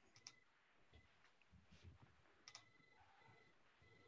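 Near silence with a few faint, short clicks, the clearest about a quarter second in and another about two and a half seconds in.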